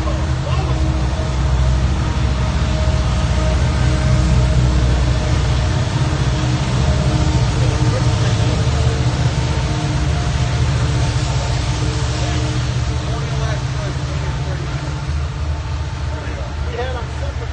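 Hot tub jets running: a steady rumble and hiss of churning water, with faint voices under it.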